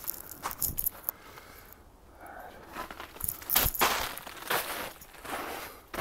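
Footsteps in shallow snow: several uneven steps, with a short pause in the first half.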